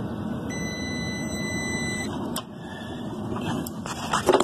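A digital multimeter's continuity beep: one steady electronic tone lasting about a second and a half, starting about half a second in. It sounds over the steady running noise of a rooftop HVAC unit, and a couple of light clicks come near the end.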